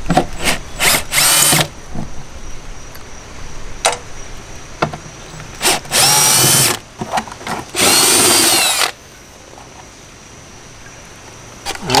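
Cordless drill driving out the bolts of a license plate bracket: a few short trigger blips and three longer runs, each with a whine that rises as the motor spins up and then holds steady.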